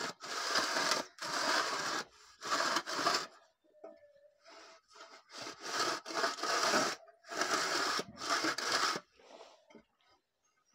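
A metal straightedge scraping along fresh cement mortar on a brick wall face. The scrapes come in rough strokes about a second long, with a pause of about two seconds near the middle.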